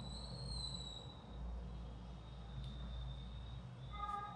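Low, steady background hum at a low level, with a faint, thin high-pitched tone that drifts slightly and fades out about a second in.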